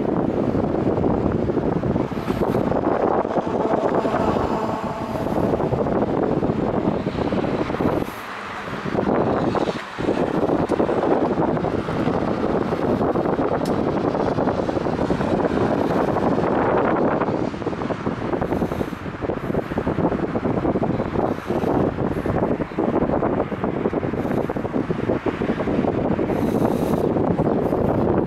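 Loud, rushing wind on the phone's microphone, easing briefly about eight and ten seconds in.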